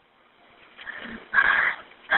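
A person's short, high distressed cry heard over a telephone line, coming about a second and a half in after a moment of near silence.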